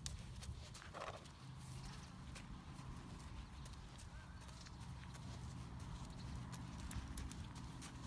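Faint, soft hoof steps of a thoroughbred horse walking on a sand arena footing, at an irregular, unhurried pace.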